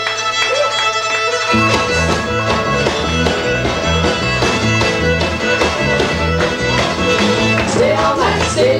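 A live band with a fiddle playing the lead line. Bass and drums join with a steady beat about a second and a half in.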